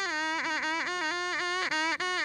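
A reed folk pipe playing a single melody line, its notes sliding and bending in quick ornaments.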